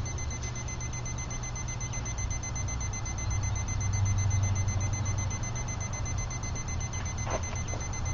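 Steady low rumble of a wood-pellet-fuelled wood-gas camp stove burning in a breeze under a pot at a full boil, swelling for a second or two about halfway through. A thin, steady high-pitched tone sits over it.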